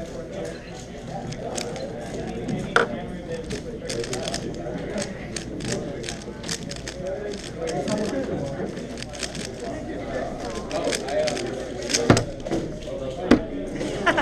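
A 3x3 speedcube being turned very fast, a dense run of plastic clicking, with a few sharper knocks, the loudest near the end, over the chatter of a crowded room.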